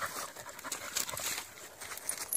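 Two dogs play-fighting in wet leaf litter: irregular scuffling and crackling rustle of leaves and paws, with dog noises.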